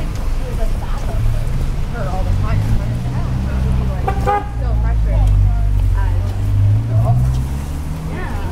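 Street traffic: a motor vehicle's engine running close by, its low drone strengthening a couple of seconds in and rising slightly in pitch near the end. Scattered passers-by's voices come over it.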